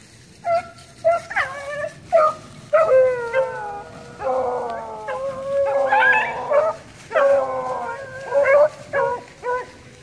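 A pack of rabbit hounds baying and howling as they run a rabbit's scent trail. The drawn-out, falling calls start about half a second in, and several dogs give tongue at once in the middle.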